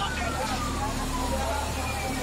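An emergency vehicle's siren wailing, its pitch sliding slowly down, then starting another falling sweep near the end, over a steady low rumble and distant voices.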